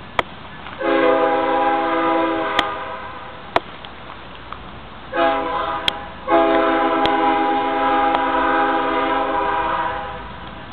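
Locomotive air horn of an approaching BNSF coal train, several notes sounding together: one long blast, a short one, then another long one held nearly four seconds, the pattern of a grade-crossing warning. A few sharp clicks sound between the blasts.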